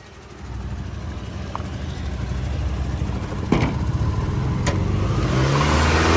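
A car's four-cylinder engine, that of a 1999 Acura CL, running with a low rumble that grows steadily louder, with two sharp clicks about three and a half and four and a half seconds in.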